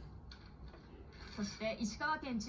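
Only speech: a television news announcer's voice through the TV speaker, starting about a second and a half in after a short lull with a low background hum.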